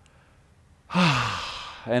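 A deep, audible sigh close to the microphone: a voice sliding down in pitch over a breathy rush, starting a little under a second in and fading over about a second.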